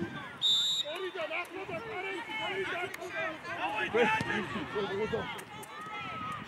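Players and coaches shouting across a football pitch, many voices overlapping without clear words. A brief high-pitched tone sounds about half a second in.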